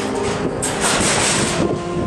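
Car-carrying shuttle train running, a loud, even rumble and rush of wheels and wind, strongest about a second in.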